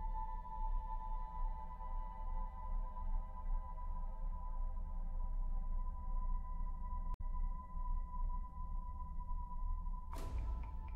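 Ambient electronic background music: a steady drone of several held tones over a low rumble, with a momentary dropout about seven seconds in.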